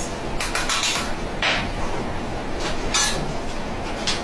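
A metal spoon stirring a mixture in a glass jar, clinking and scraping against the glass in a few irregular strokes.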